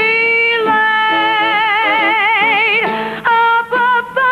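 A woman singing one long held note with a wide, even vibrato for nearly three seconds, over instrumental accompaniment, followed by a few shorter sung notes near the end.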